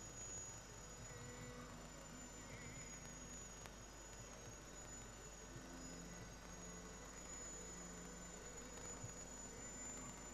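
Near silence: faint tape hiss with a steady high-pitched whine from the home-video recording.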